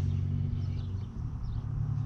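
Steady low rumble of a vehicle engine idling, with no other distinct events.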